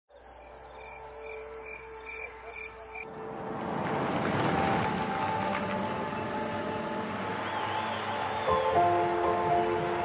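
Insects chirping in a quick, even pulse, about four chirps a second, over a low hum for the first three seconds. Then a swelling wash of noise rises, and soft sustained music notes come in near the end.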